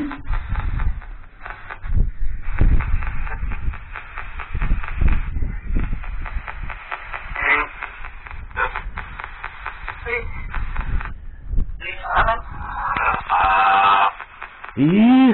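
Spirit-box (ghost box) app on a smartphone sweeping, putting out rapidly chopped fragments of static and snatches of voice-like and musical sound. A louder voice-like burst comes near the end.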